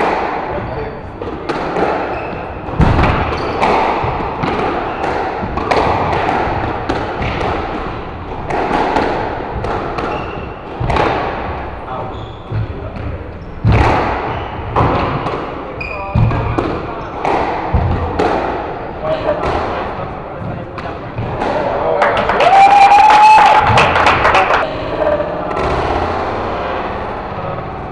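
Squash rally: the ball struck by rackets and hitting the court walls in a string of sharp thuds every second or two, with footwork on the wooden floor and voices in the background. Near the end comes a louder burst lasting about two seconds.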